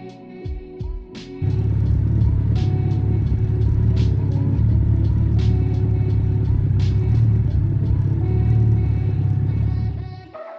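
Second-generation Suzuki Hayabusa's inline-four engine running steadily in gear, spinning the rear wheel and chain: a deep, steady rumble that comes in suddenly about a second and a half in and holds to the end, over background music.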